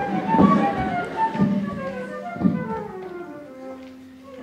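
Live opera orchestra, a flute playing a melody in short notes that step downward over a held low note. Several dull thumps fall in the first half.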